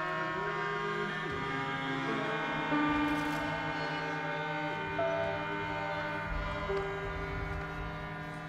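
Harmonium playing sustained chords over a steady drone, with bowed violins and cello holding long notes that shift in pitch every second or so. A brief knock sounds about three seconds in.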